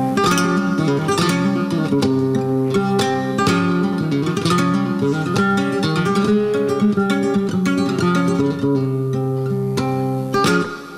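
Solo flamenco guitar playing the opening of a seguiriyas: picked melodic notes broken by sharp strummed chords.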